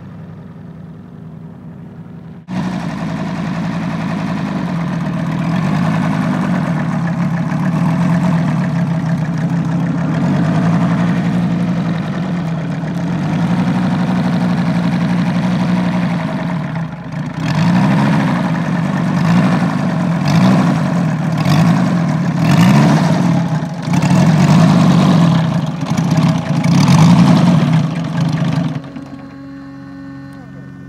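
Moki 250 cc radial engine of a giant RC warbird, heard faintly at first and then loud up close from a few seconds in, running steadily at idle. In the second half it is revved up and down in a string of short surges, and it cuts off near the end.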